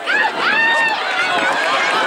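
Several spectators shouting and yelling at once, loud, high-pitched, overlapping calls of encouragement to relay sprinters going by.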